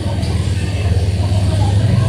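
Busy market ambience: a steady low rumble under faint, indistinct voices of people talking.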